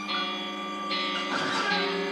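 Electronic keyboard synthesizer playing sustained, ringing notes that overlap one another, with new notes coming in about a second in and again shortly after.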